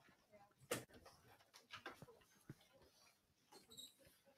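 Near silence: classroom room tone with faint scattered rustles and clicks, and one sharper click a little under a second in.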